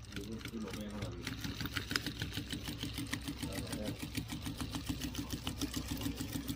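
Sewing machine running steadily, its needle stitching in a quick, even rhythm.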